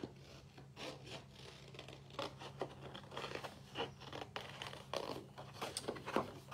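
Scissors snipping through a sheet of printed paper, with the paper rustling and rubbing as it is handled: a faint run of short, irregular cuts.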